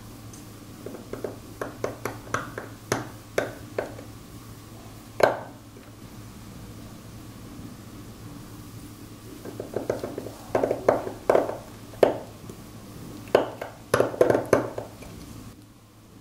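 Steel seal-carving knife cutting into the face of a Qingtian stone seal: short, sharp scraping strokes in quick runs, one louder stroke about five seconds in, a pause, then a second flurry of strokes.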